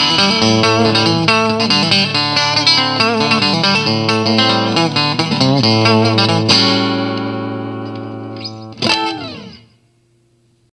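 Frank Deimel Firestar electric guitar playing a run of quick notes and chords, then a chord struck about six and a half seconds in that rings out and fades. Near the end, one last strike whose notes bend downward in pitch as the sound dies away.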